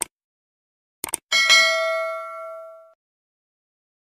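Sound effects for a subscribe button: a short mouse click, two more clicks about a second in, then a notification-bell ding that rings out and fades over about a second and a half.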